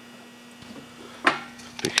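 Steady low electrical hum from a battery charger working at about 21 amps, with one sharp click about a second in and a man's voice starting near the end.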